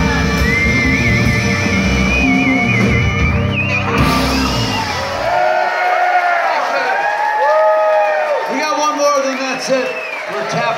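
Live band playing the last bars of a song, with a held, wavering high note over the band, ending about four seconds in. Then the audience cheers, whoops and yells.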